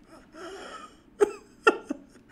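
A man's breathless, wheezing laughter: a long rasping in-breath, then three sharp, loud bursts of laughter in quick succession.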